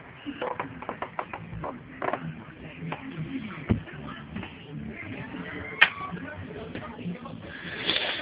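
Handling noise from a handheld camera being carried: scattered knocks and rustles over steady background noise, with one heavier thump about three and a half seconds in and a sharp click a couple of seconds later.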